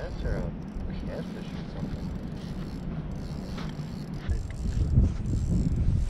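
Small ice-fishing reel ratcheting as a big hooked fish is played on a short rod, over a steady low rumble of wind on the microphone.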